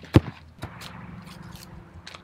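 A soccer ball kicked hard off grass: one sharp thud about a fifth of a second in, followed by a few faint scuffs and clicks.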